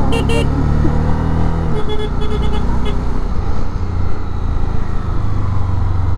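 Honda CB300F's single-cylinder engine running at low revs as the bike creeps through slow traffic. Short high horn beeps come at the very start, and a quick run of beeps follows two to three seconds in.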